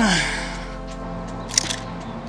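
Background music with steady held tones. A short sound falling in pitch opens it, and a single sharp click comes about one and a half seconds in.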